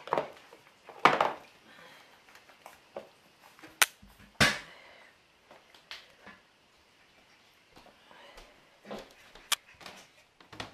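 Camera handling noise over a tile floor: short rustling bursts at the start and about a second in, two sharp clicks about four seconds in followed by a heavier thump, and another sharp click near the end.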